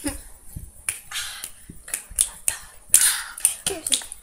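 Irregular sharp hand clicks and slaps, about half a dozen spread over a few seconds, from hands moving quickly close to the microphone.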